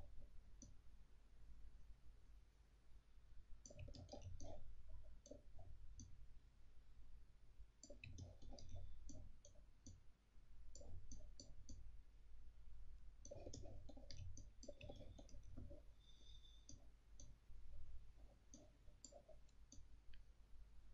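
Faint computer mouse clicks in quick clusters of several at a time, separated by pauses of a second or two, over a low steady hum.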